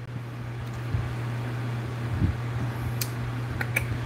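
Steady low hum of a running fan, with a few faint clicks near the end.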